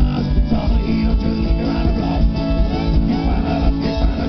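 Live rock band playing: guitars over bass and drums with a steady, driving beat.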